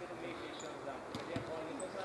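Two dull thumps of a football being kicked, a little past a second in, over faint shouts of distant players.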